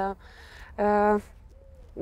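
A woman's single held hum of hesitation in mid-sentence, one steady note of about half a second at the pitch of her speaking voice.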